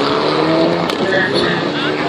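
Rally car engine running at speed through the stage, with a steady engine note, amid spectators' chatter.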